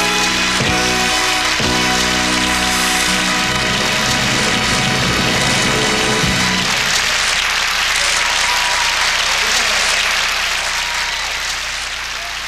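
A live band holds its closing chord, which ends about six and a half seconds in. Audience applause takes over and fades slightly toward the end.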